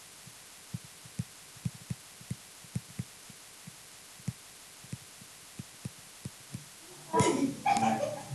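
Digital pen stylus tapping on its writing surface while words are written by hand: a run of about twenty soft, low taps at irregular spacing, about three a second, which stop a little before speech resumes near the end.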